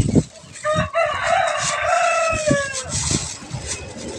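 A bird's single long call, held for about two seconds and dropping off at the end, over the crinkle and light knocks of plastic wrapping being handled.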